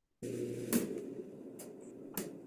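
Faint steady hiss with a low hum, switching on abruptly just after the start, with a few soft clicks over it: the audio of a played-back video coming in before its first spoken line.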